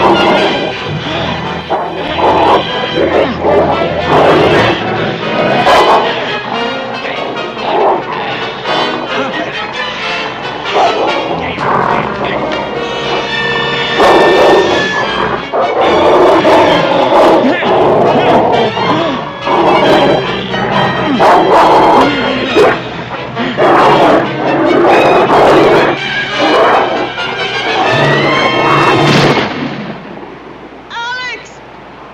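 Dramatic film score over wolves snarling and a man crying out as the wolves attack him, with thuds of the struggle.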